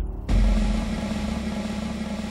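Early motor car engine running steadily, a sound effect laid over archive film; it starts abruptly a moment in as a constant hum with a hiss of noise.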